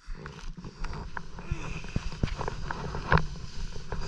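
Irregular knocks, scrapes and rustles of snow and ski gear against a body-worn camera as a fallen skier moves about in the snow, with the sharpest knock about three seconds in.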